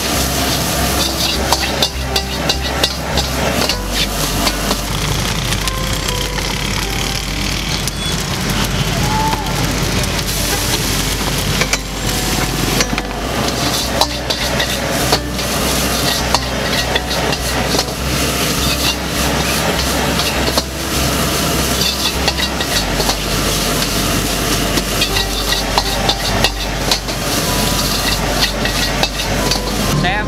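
Rice frying in a wok, sizzling, with a metal ladle scraping and knocking against the wok many times as it is stirred and tossed.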